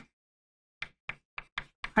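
Chalk tapping against a chalkboard as letters are written: about five short, sharp taps in the second half.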